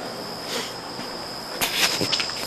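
Crickets giving a steady, high-pitched trill over a faint hiss. Rustling and bumps from the camcorder being handled come about half a second in and again, louder, near the end.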